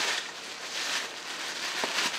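Clear plastic bubble wrap rustling and crinkling as a small cardboard box is slid out of it, with a faint tick near the end.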